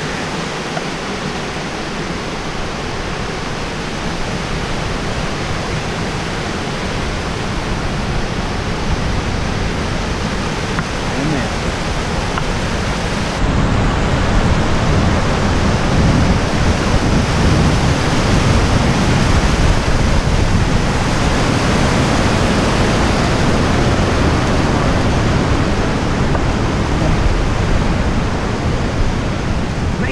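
Rushing white water of a mountain creek cascading over rocks, a steady loud rush that steps up abruptly and grows louder about halfway through.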